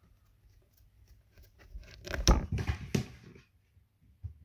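A cat brushing its fur against the phone held close to the microphone: a burst of close rustling and scraping from about two seconds in, loudest near the middle, dying away before the end.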